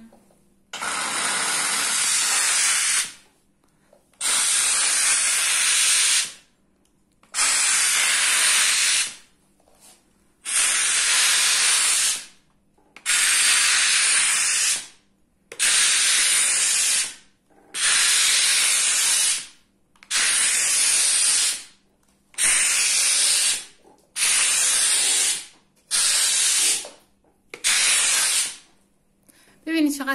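Kärcher steam cleaner hissing out steam through its floor nozzle in about a dozen separate bursts of one to two seconds each, with short silent gaps between them, as the steam trigger is pressed and released while the nozzle is worked over a woven rug.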